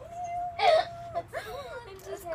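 A girl's whining, wordless cry, held on one pitch for about a second with a louder yelp about halfway, then short wavering whimpers, as she is splashed with a cup of water.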